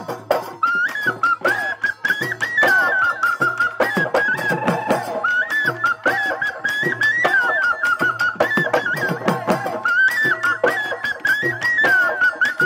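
Assamese Bihu folk music: a high, ornamented wind-instrument melody over fast, steady dhol drumming with cymbal strokes.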